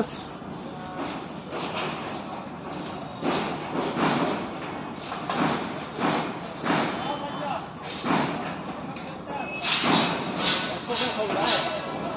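Indistinct voices of a work crew, with irregular knocks and thuds of metal work on a steel tower-crane frame.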